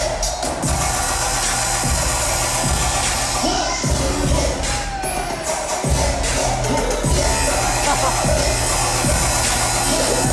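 Loud dubstep played live over an arena sound system, with heavy bass beats and crowd noise underneath. The sound breaks off abruptly twice, about four and six seconds in.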